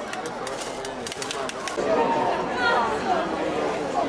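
Rapid, short scrapes and taps of a stick against the inside of a metal carapigna canister as the lemon sorbet is worked, over the first couple of seconds, then voices of onlookers.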